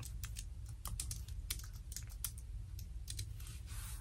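Typing on a computer keyboard: quiet, irregular keystrokes in quick runs, over a steady low hum.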